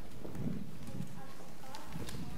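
Footsteps on a raised wooden stage floor: several dull, low thuds as people walk across it.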